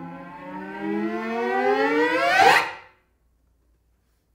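Solo cello bowed: a low held note that slides up in one long glissando, growing louder, then cuts off sharply just under three seconds in.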